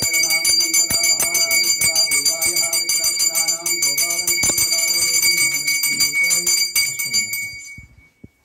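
Brass temple hand bell rung rapidly and continuously during puja, a bright steady ring, with melodic music underneath. The ringing dies away near the end, the bell tone hanging on briefly.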